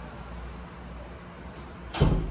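Refrigerator door swung shut, closing with a sudden loud thud right at the end, over a steady low hum.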